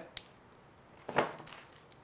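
Handling of packaging and bands on a desk: a light click just after the start, then about a second in a single short knock as an item is set down.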